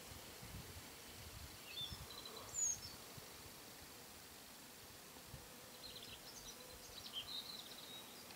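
Faint outdoor ambience with a few brief, faint bird chirps, about two seconds in and again around six to seven seconds, over a low rumble.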